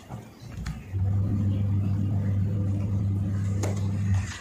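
A steady low hum, as of a motor or fan, that drops out for about the first second and then returns and holds. Faint soft rustles from a deck of tarot cards being shuffled by hand.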